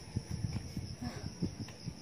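A steady, high-pitched insect chorus from the surrounding brush, with irregular low thuds and bumps close to the microphone throughout.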